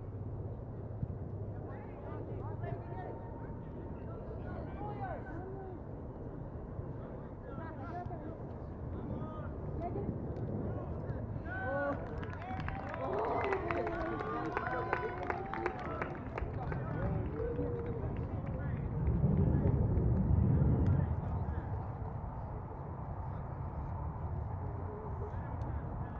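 Distant shouts and calls of soccer players and sideline spectators over outdoor ambience, busiest about halfway through. A low rumble swells briefly past the two-thirds mark.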